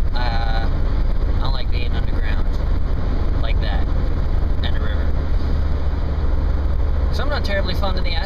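Steady low rumble of road and engine noise inside the cabin of a car driving at speed.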